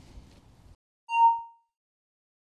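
Faint outdoor background hiss cuts off to dead silence, then a single bright chime, one ding, sounds about a second in and fades within half a second: a logo sting sound effect.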